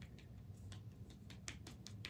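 Light quick ticks and taps of a makeup marker being dabbed against the face, clustering into a rapid run about one and a half seconds in, over a faint steady hum.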